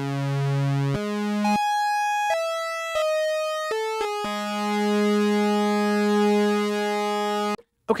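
Arturia CS-80 V software synthesizer playing a dry square-and-triangle-wave patch with LFO pulse-width modulation, so the tone wavers slowly. A held note gives way about a second in to a run of short notes jumping up and down in pitch, then a long held low note that cuts off suddenly near the end.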